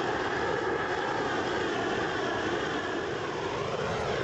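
Torch flame burning with a steady rushing noise as it heats a heat-shrink pipe sleeve to shrink it onto the pipe.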